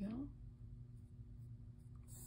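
Pencil lightly scratching on sketchbook paper, faint, over a steady low electrical hum.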